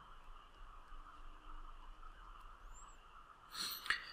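Faint room hiss, then a short intake of breath with a small mouth click near the end.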